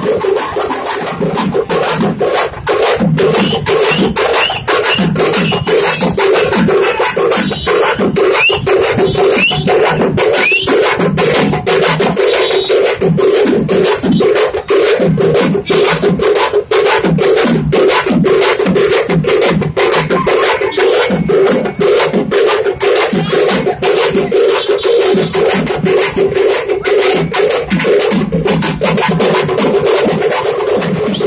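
Festival drums playing a fast, steady rhythm of rapid strokes, with a droning tone held underneath.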